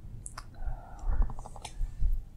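Wet mouth clicks and lip smacks from a man about to answer a question, picked up close on a clip-on microphone, with a quick run of ticks in the middle and a soft low thud.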